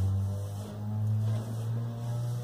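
A low, steady motor-like hum that shifts slightly upward in pitch about a second in.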